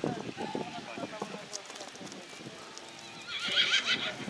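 Cross-country eventing horse galloping on turf, its hoofbeats sounding, with a horse whinnying loudly in a wavering call near the end.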